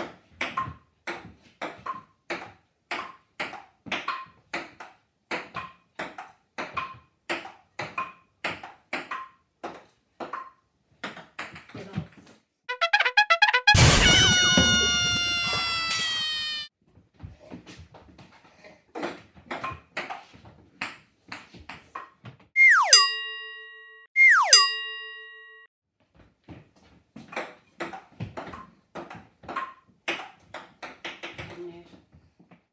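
Table tennis ball in a rally, light quick taps on the table and bats about two to three a second. About halfway through, a loud sustained tone with several falling pitches cuts in for about three seconds, and later two short tones slide sharply down in pitch, one after the other.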